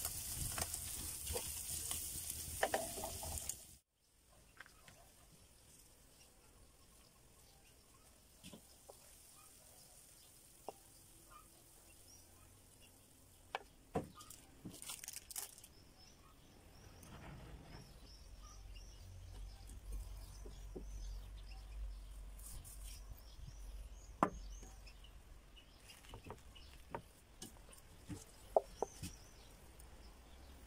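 Minced meat sizzling in a frying pan over a fire, cutting off abruptly about four seconds in. Then quiet, with scattered soft taps and clicks and faint bird chirps toward the end.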